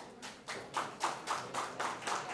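Audience clapping in a steady rhythm, about three to four claps a second, starting thin and getting louder.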